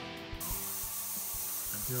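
An airbrush spraying paint with a steady high hiss that starts about a third of a second in, over guitar background music.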